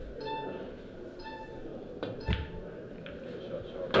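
Pool shot being played: the cue strikes the cue ball and balls click together on the table, with the sharpest knock a little past halfway. Low room murmur lies underneath.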